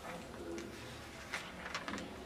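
Pages of a book being turned by hand, with a few crisp paper rustles in the second half. A low bird call sounds about half a second in.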